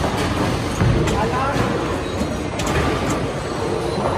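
Bowling balls rolling down the wooden lanes with a steady rumble, broken by a few sharp knocks of balls and pins, under the chatter of a busy bowling alley.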